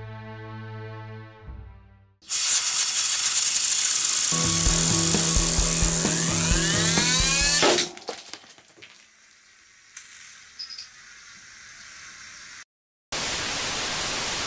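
A compressed-air blow gun blasting a fidget spinner: a loud hiss of air, joined after about two seconds by the spinner's whine, which rises in pitch as it speeds up. The sound cuts off suddenly. Background music plays for the first two seconds.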